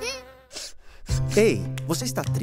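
Cartoon bee buzzing as it flies away, a wavering buzz that fades out within the first half-second. About a second in, new music starts, with a steady low note under sliding tones.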